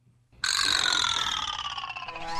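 A cartoon comedy sound effect: after a moment of silence, a bright tone starts suddenly about half a second in and slides slowly down in pitch.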